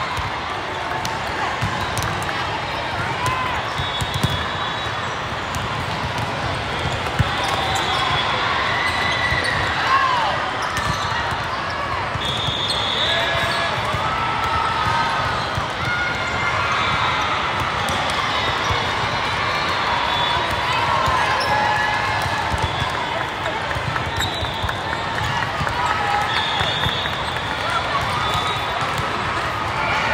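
Busy indoor volleyball tournament hall: a steady din of many voices across the courts, with sharp knocks of volleyballs being hit and bouncing on the hard court, echoing in the large hall.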